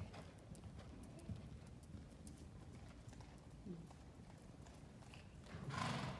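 Faint hoofbeats of a horse cantering on soft indoor-arena sand footing, with a louder rush of noise shortly before the end.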